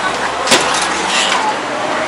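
Busy city street sound: traffic noise with passers-by talking, and one sharp click about half a second in.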